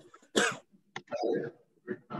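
A person coughs once, sharply, about half a second in, followed by quieter throat-clearing sounds.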